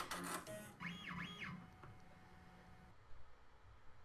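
Multi-needle embroidery machine stitching the layers of a face mask together. Its drive whines up and then down in pitch twice in the first second and a half, and then a faint hum fades to near silence.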